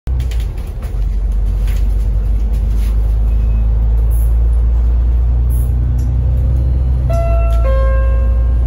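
Steady low rumble of a bus cabin while the bus is moving. About seven seconds in, the onboard announcement system sounds a two-note falling chime, a higher note and then a lower one, the signal that a next-stop announcement is coming.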